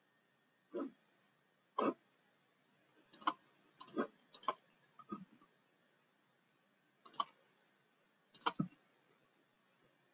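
Computer mouse buttons clicking: about eight short, sharp clicks, some in quick pairs, spaced irregularly with silence between.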